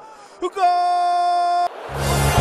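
A football commentator's drawn-out goal shout: one long held note that cuts off abruptly. Near the end, background music with a heavy beat comes in.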